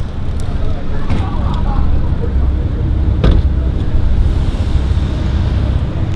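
Roadside traffic noise: a steady low rumble of cars and road, with faint voices and a single sharp knock about three seconds in.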